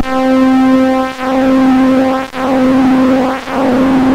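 Soundgin synthesizer chip sounding one steady square-wave tone, repeated four times at about a second each with brief breaks. The tone turns rougher and noisier as pulse width modulation and distortion, random jitter added to the oscillator's frequency, are turned up.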